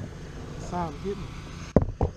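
A single sharp knock near the end, over a steady low rumble, with a brief faint murmur of a voice in the middle.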